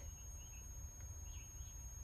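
Faint outdoor background: a steady low rumble with a few soft, high chirps and one small click about a second in. The truck's horn is pressed but gives no sound, which is taken to mean it needs the key in the ignition.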